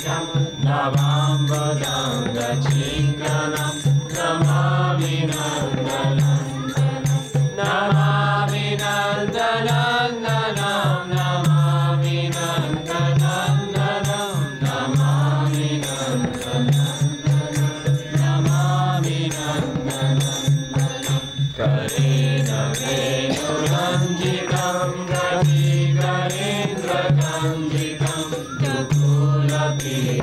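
Group devotional chanting (kirtan) by a gathering of devotees: a sung mantra that goes on without a break, over a steady low drone.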